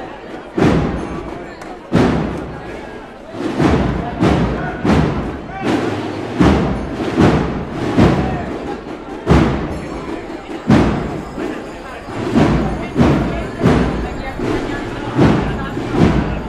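Drums of a procession band beating a steady march, heavy strokes a little over one a second, with the band's music and crowd voices between the beats.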